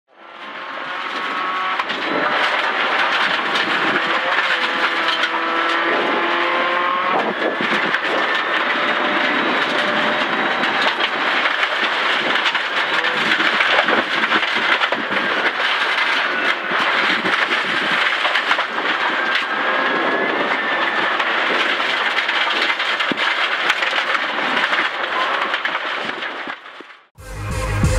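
A Subaru Impreza rally car heard from inside the cabin at speed on gravel. The engine's pitch rises and falls repeatedly as it revs through the gears, over steady tyre and gravel noise with many small clicks of stones. The sound fades in quickly at the start.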